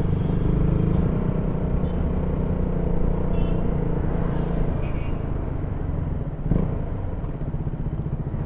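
KTM Duke 200's single-cylinder engine running steadily at low road speed, heard from the bike itself, with a steady engine note and no change in pitch.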